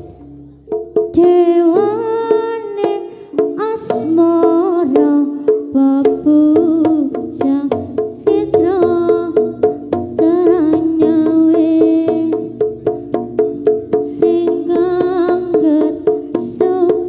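Live Javanese gamelan music for a barong dance: drum strokes and struck-metal tones keep a steady beat under a high melodic line that bends up and down in pitch. It comes in fully about a second in after a brief dip.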